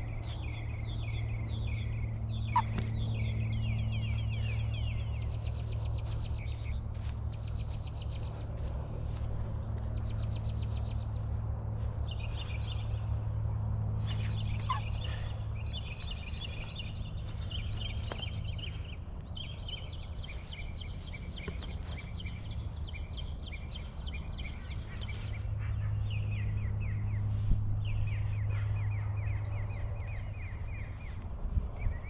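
Rapid trilling animal calls repeated in phrases of a second or two, one after another throughout, over a steady low hum. A couple of sharp knocks stand out, one early and one near the end.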